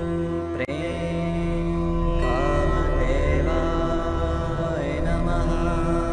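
A chanted mantra with a sustained drone of meditation music beneath it. The voice enters with gliding, ornamented notes about two seconds in and again near five seconds. The sound breaks briefly just over half a second in.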